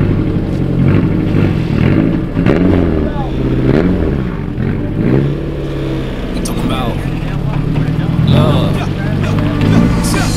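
Turbocharged Honda S2000 four-cylinder engine running as the car pulls away slowly, its pitch repeatedly rising and falling with blips of the throttle.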